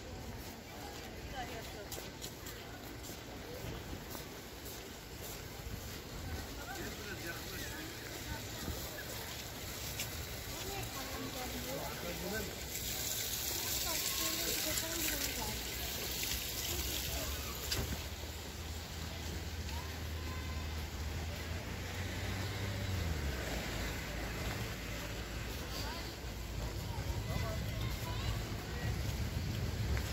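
Outdoor ambience of a seaside promenade: faint, indistinct voices of people nearby over a steady background. A rush of louder noise lasts a few seconds near the middle, and a low hum runs through the second half.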